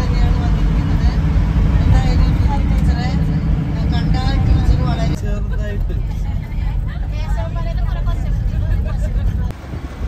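Low road rumble of a moving vehicle with voices talking over it. The rumble lightens abruptly about five seconds in.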